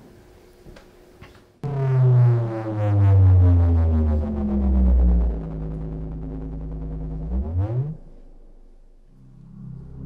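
Electronic synthesizer sound from a played installation video: a deep, loud tone comes in suddenly after a quiet opening and slides slowly down in pitch, then sweeps up briefly and breaks off, leaving a low steady hum near the end.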